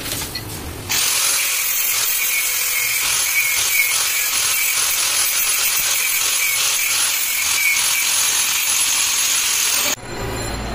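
Handheld angle grinder grinding the metal of a motorcycle gear shift lever. It makes a steady high whine over a hiss, starting abruptly about a second in and cutting off just before the end.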